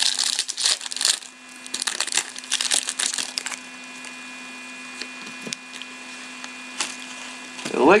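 Crinkling and rustling of a foil trading-card pack wrapper and the cards inside as it is opened and handled by hand. The crinkling comes in quick bursts through the first three and a half seconds, then it is quieter with only a few faint clicks.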